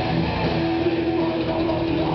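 Live heavy metal band playing: distorted electric guitars, bass guitar and drum kit in a loud, dense, unbroken wall of sound.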